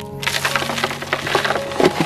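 Potting soil being poured into a styrofoam box: a dense, crackling patter of falling soil that starts about a quarter second in, loudest near the end.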